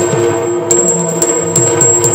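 Yakshagana instrumental passage: a maddale (two-headed barrel drum) played in a running rhythm, with small hand cymbals (tala) struck sharply in time, over a steady drone.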